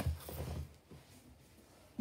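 A click and a brief soft rustle of trading cards being handled and set down on a playmat, followed by near silence.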